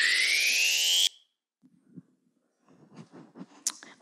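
Electronic sound effect: a rising pitched sweep with several overtones, played over the PA as a scene-change cue, cutting off abruptly about a second in. Near silence follows, with a few faint clicks and rustles near the end.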